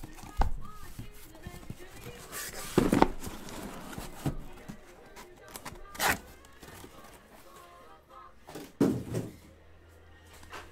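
A taped cardboard shipping case being opened by hand: four or five short, sharp rips and thunks of packing tape and cardboard flaps, the loudest about three seconds in. Faint background music plays under it.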